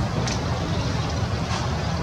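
Steady low rumble of wind on the microphone, with a few faint short high chirps.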